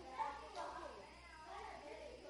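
Faint, indistinct speech: voices too low or distant to make out words.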